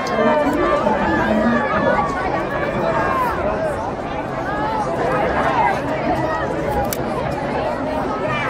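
Spectators in the stands chattering, many voices overlapping into a steady babble with no single clear speaker. A couple of sharp clicks stand out, one at the start and one about seven seconds in.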